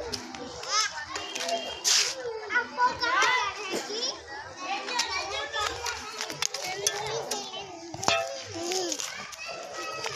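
Young children's voices: high-pitched calls and babbling throughout, with no clear words.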